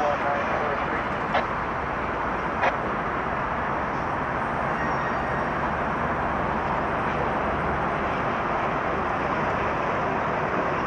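Steady roar of freeway traffic and a slow-moving passenger train, with two sharp clicks about one and a half and three seconds in.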